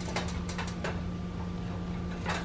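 Silicone spatula scraping and pushing soft scrambled eggs around a nonstick frying pan, a few short scrapes in the first second, over a steady low hum.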